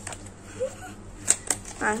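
Two sharp clicks of handling, about a second and a half in and close together, with a low steady hum underneath; a girl's voice starts just before the end.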